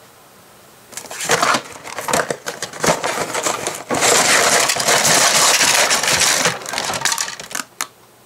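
A LEGO set's cardboard box being opened and its contents pulled out: cardboard rustling and plastic bags of bricks crinkling and rattling. The contents are packed tight. The sound starts about a second in, comes in irregular bursts, is loudest in a long dense stretch midway, and ends with a few sharp clicks.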